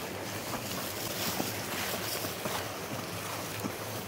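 An Alaskan Malamute wading through a shallow creek, its legs splashing in the water, over the steady rush of the flowing stream.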